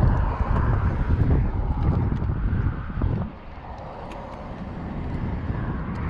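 Wind buffeting the camera microphone in a heavy low rumble, which drops off sharply about three seconds in and then slowly builds again.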